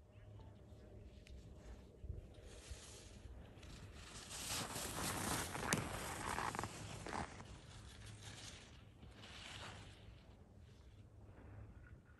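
Ski edges carving and scraping over groomed snow as a young racer makes giant slalom turns close by: a hiss that swells over a few seconds and fades, with a sharp click near the middle and a smaller second swell near the end.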